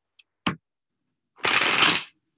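A deck of tarot cards being shuffled: a light tap about half a second in, then a brief rush of cards riffling together for under a second near the end.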